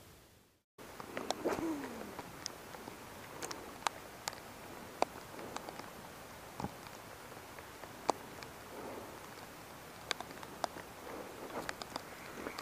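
Faint outdoor lakeside ambience: a steady low hiss with scattered sharp ticks, and a short falling tone about a second and a half in, after a brief silent gap at the start.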